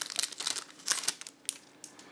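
Foil wrapper of a Pokémon TCG Plasma Freeze booster pack crinkling and crackling in the hands as the pack is opened, in quick sharp crackles that thin out after about a second and a half.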